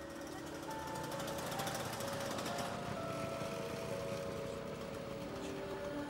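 Lambretta C scooter's small two-stroke engine riding past, its rapid exhaust pulsing loudest about two seconds in, over film-score music with long held notes.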